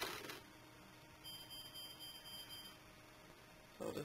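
A brief rustle of handling right at the start, then a faint, steady, high electronic beep lasting about a second and a half.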